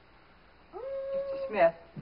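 A boy singing: after a short hush, his voice glides up into a held note for about a second, then drops away in a short falling syllable near the end.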